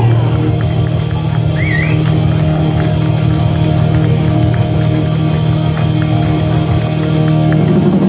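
Live rock band in a bar, electric guitar and bass playing through amplifiers: a low chord held steadily, which breaks into a moving rhythmic part near the end.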